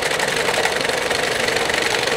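Electric sewing machine running steadily at speed, its needle stitching through fabric with a fast, even mechanical rhythm.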